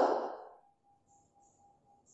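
A woman's last spoken word trailing off in the first half second, then near silence with a faint steady tone.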